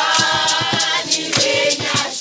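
A group of voices singing together unaccompanied, with steady hand claps keeping the beat.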